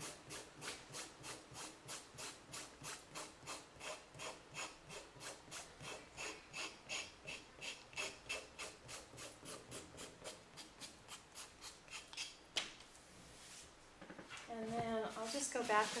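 Nail file rasping back and forth along the paper-covered edge of a wooden shape, about three strokes a second, sanding the excess paper flush with the edge. The filing stops about twelve and a half seconds in, followed by a single click.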